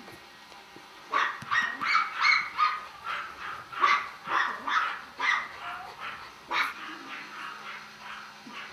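Golden retriever puppy giving a run of short, high-pitched yips and whimpers, about two a second, starting about a second in and stopping shortly before the end.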